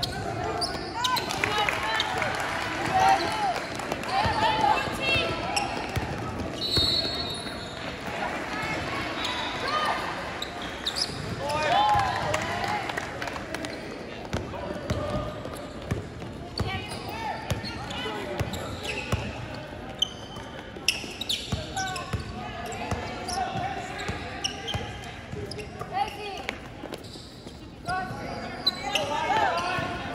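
A basketball bouncing on a wooden court floor during play, under voices of players and spectators calling out, in a large echoing hall.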